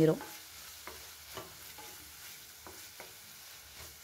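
Chopped onions frying in oil in a non-stick pan, with a soft sizzle, stirred by a wooden spatula that makes scattered light scrapes and taps against the pan.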